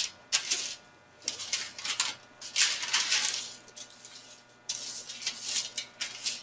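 A flat painting knife scraping over wax paper laid on a painting, spreading clear gesso in a series of rough scraping strokes, about one a second, with a short pause near the middle.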